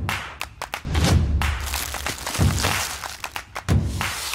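Heavy thumps roughly every second or so, mixed with quick sharp clicks and knocks over faint music, from an advert's soundtrack.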